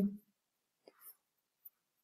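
The end of a spoken word, then near silence (room tone) with a few faint clicks about a second in.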